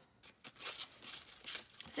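Paper rustling and scraping as cut-out paper wings are pushed through a slit in a paper bird's body, in two short stretches.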